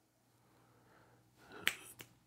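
A quiet stretch, then a faint soft noise and a single sharp click near the end.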